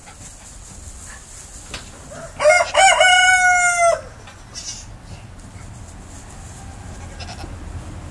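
A loud drawn-out animal call about two and a half seconds in, lasting about a second and a half: it starts in short broken notes, then holds one slightly falling pitch and cuts off.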